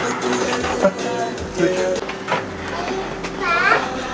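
Indistinct voices, among them a child's high voice near the end, over quiet background music.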